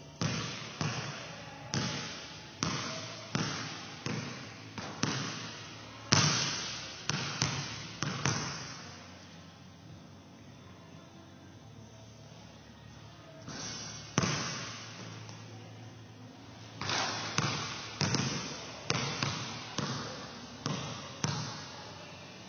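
Leather basketball being dribbled on a gym floor: a string of sharp bounces, each ringing out in the hall. The bouncing stops for about four seconds midway, then resumes.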